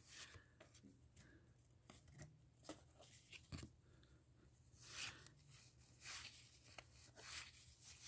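Faint, scattered rustles and soft clicks of cardboard baseball cards being slid apart and flipped through by hand, over near silence.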